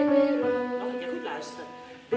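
Piano accompaniment with voices singing; the final notes of a phrase are held and fade away.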